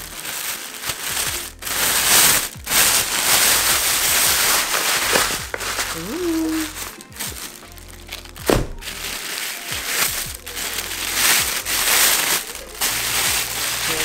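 Thin plastic carry-out bag crinkling and rustling in irregular bursts as it is untied and pulled off takeout food containers, with background music underneath.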